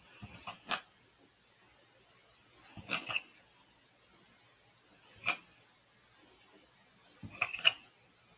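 Light clicks and taps in four short clusters a couple of seconds apart, from a small hand tool being worked on a painted canvas.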